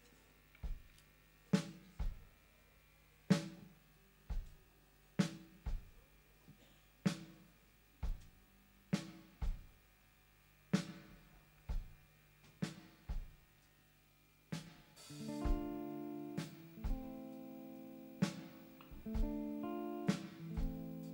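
Live rock drum kit playing a slow, sparse beat alone, single kick drum and snare strokes in turn, about one stroke a second. About fifteen seconds in, the band comes in with sustained guitar chords over the beat.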